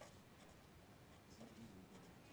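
Near silence, with the faint scratching of a felt-tip marker writing on paper.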